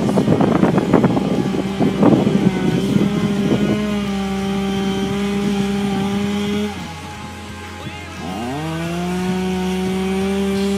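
Chainsaw engine running at high, steady revs. Near the seventh second the revs fall away, and about a second later they climb back up and hold. The tail of a music track fades out under it in the first few seconds.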